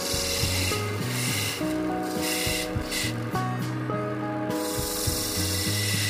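A metal turning tool scraping a bamboo cup blank spinning on a lathe, in a few rasping strokes with short gaps between them. Background music with held notes plays throughout.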